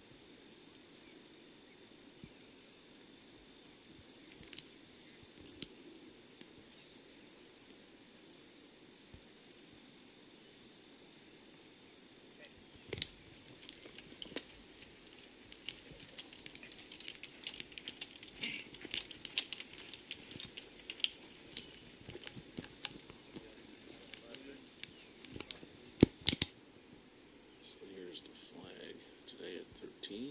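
Steady high-pitched insect drone from the summer grass, with a sharp click about halfway through and a run of close crinkling and crackling clicks in the second half, loudest near the end.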